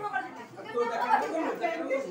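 Overlapping chatter of several women's voices in a room, with no other sound standing out.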